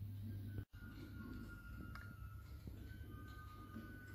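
Quiet room tone: a steady low hum that cuts off abruptly under a second in, then a faint quiet background with a few long, thin, high held tones.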